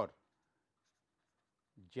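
Ballpoint pen writing on paper: faint scratching strokes between two spoken words, a man's voice saying 'or' at the start and beginning another word near the end.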